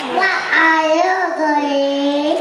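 A young child singing into a handheld microphone, the voice bending in pitch and then holding one long note from a little past the middle.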